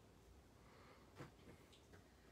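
Near silence, with a few faint, short snips of scissors trimming buckskin leather beginning just past a second in.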